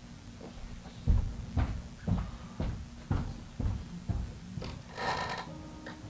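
Footsteps on a stage floor, about two heavy steps a second, as a man walks off; near the end comes a brief rustling burst of noise.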